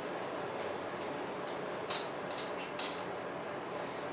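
Faint, scattered small metallic ticks and clicks of a thin wire picking at the main jet in a Craftsman snowblower's carburetor, working it loose. The clicks are clearest about two seconds in and again shortly before three seconds.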